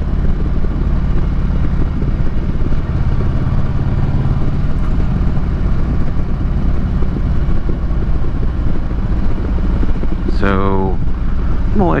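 A 2015 Harley-Davidson Street Glide Special's V-twin engine running steadily while the bike cruises along, with steady wind noise over it.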